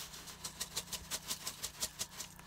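Plastic pepper grinder being twisted over frying eggs, grinding with rapid, evenly spaced clicks.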